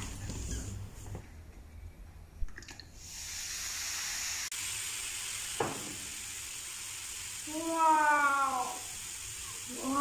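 Baking soda and vinegar volcano fizzing with a steady hiss from about three seconds in as the foam erupts. Around eight seconds in, and again at the end, a child lets out a long drawn-out exclamation.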